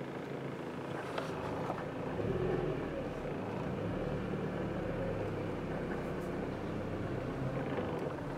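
Car driving slowly, heard from inside the cabin: a steady low engine and road rumble that swells a little about two seconds in.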